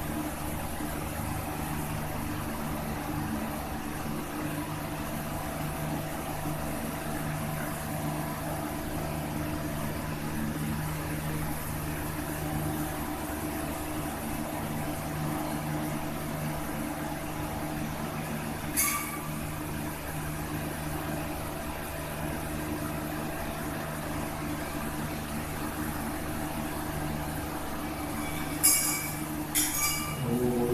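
A steady machine-like hum with several held tones runs through, like a fan or other electrical machine. One sharp metallic clink comes about two-thirds of the way in, and a few more near the end, fitting small metal ritual vessels being set down or touched.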